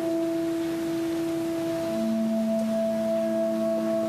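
Two instruments playing a slow duet passage in long, steady held notes: one note sounds throughout, and a second, lower note joins about halfway through and holds with it.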